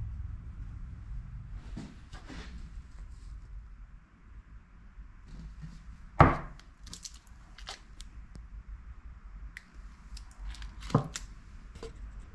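Objects being handled and set down on a wooden workbench: a sharp knock about six seconds in, the loudest sound, a smaller knock near the end, and scattered small clicks and rustles over a low room hum.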